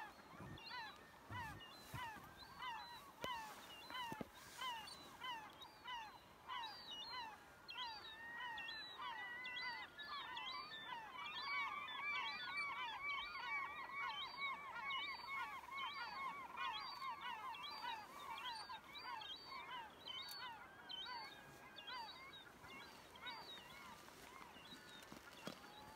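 A flock of geese honking, many short calls overlapping. The calling grows busier and louder in the middle, then thins toward the end.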